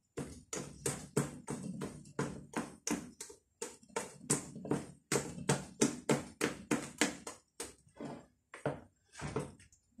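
Hand squelching and slapping through thick puto cheese batter in a plastic bowl: a run of short wet strokes, about three a second, that come less often near the end.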